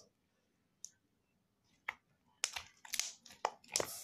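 Homemade glue slime being stretched and squeezed in the hands, giving two isolated clicks and then a quick run of sharp clicking pops in the last second and a half.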